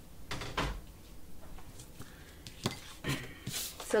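Sheets of brown cardstock slid and shuffled on a tabletop and a plastic bone folder handled, a few short scrapes and taps about half a second in and again near the end.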